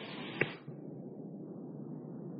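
A single sharp click about half a second in, then faint steady hiss from the cassette tape, with the upper range of the sound cut away. This is a break in the recording where the discourse breaks off.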